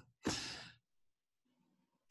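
A single audible breath from a man, close to the microphone, lasting about half a second and fading away.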